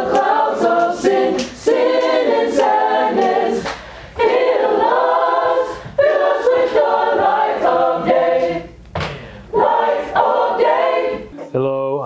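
High school choir singing together in a rehearsal, many voices in sung phrases of a couple of seconds each with short breaths between them, stopping shortly before the end.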